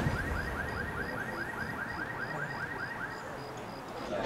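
A fast, evenly repeating electronic chirp, about four a second, that fades out about three seconds in, with a faint higher beep pulsing alongside it.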